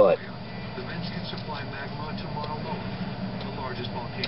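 A steady low hum of room noise, with a few faint light clicks as hands handle small parts on a workbench; one spoken word at the very start.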